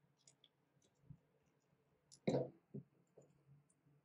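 Small metal scissors cutting paper, and the paper being handled: faint ticks and snips, then one sharper click a little over two seconds in, followed by a couple of softer ones.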